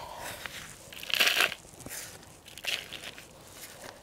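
Gloved hands scooping loose garden soil and pressing it into a small plastic nursery pot: a few scratchy, rustling bursts, the loudest about a second in.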